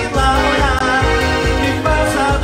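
Live accordion music over an electronic backing of bass and drums, with a steady dance beat.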